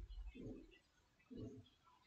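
Faint, low bird calls repeating about once a second.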